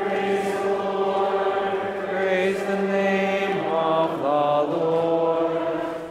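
A psalm verse chanted on one steady reciting tone, with a short melodic turn about four seconds in.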